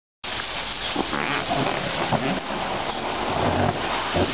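Baby elephants splashing and sloshing water in an inflatable paddling pool as they roll and climb over each other, a steady hiss of moving water.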